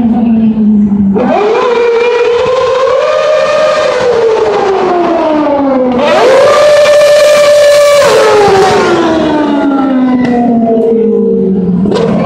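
Formula One car's engine at high revs, loud: its pitch jumps up sharply about a second in, climbs and then sweeps down, jumps up again about six seconds in and holds at its loudest for two seconds, then falls away slowly as the car passes.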